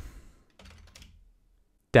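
Faint computer keyboard keystrokes, a short run of typing about half a second in.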